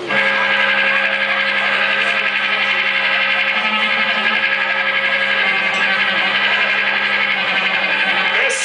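A live post-rock band starting up through amplifiers with a loud, sustained droning chord that comes in suddenly and holds steady, with a slight even pulsing.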